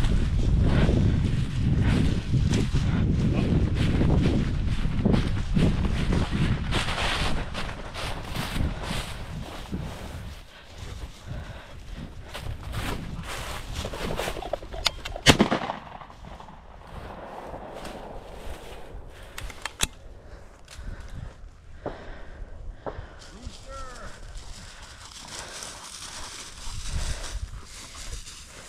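Heavy rustling of footsteps pushing through tall dry grass, then a shotgun shot about halfway through, fired at a flushed quail or Hungarian partridge.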